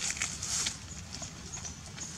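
Dry leaf litter crackling and rustling in several short bursts as a macaque shifts its feet on the leaves.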